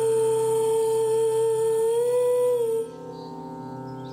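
A woman's voice holds one long note in the song, lifting slightly in pitch near the end and stopping about three seconds in. A sustained instrumental chord rings on beneath it and continues, quieter, once the voice stops.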